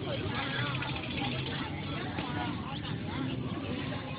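Indistinct chatter of several people's voices outdoors, over a steady low hum.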